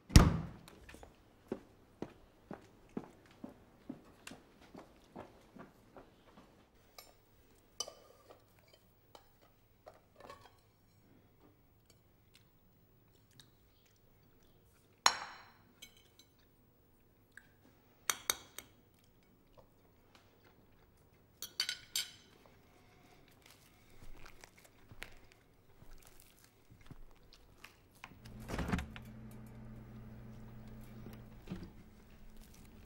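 Table sounds of a man eating: a heavy knock at the start, then a run of light taps about two a second, followed by scattered sharp clinks of knife and plate and soft chewing. A low hum comes in near the end.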